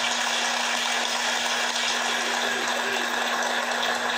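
Studio audience applauding steadily, heard through a television's speaker.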